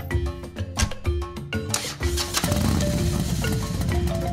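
Upbeat background music of short marimba-like notes. About halfway through, a rustling, rubbing handling noise comes in under the music and carries on.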